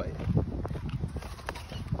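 A person biting and chewing a McIntosh apple, with a few sharp crunches over low, irregular chewing sounds.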